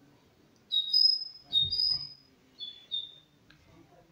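A bird singing a short phrase of four clear whistled notes, each held at a steady high pitch for a fraction of a second.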